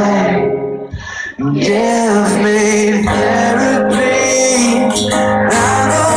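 Live acoustic song: a strummed acoustic guitar with singing, the vocal breaking off briefly about a second in before carrying on.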